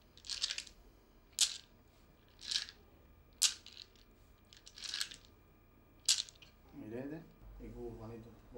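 Divination seeds rattled and rubbed between cupped hands: a short dry swish about once a second, six times in all. A voice is heard faintly near the end.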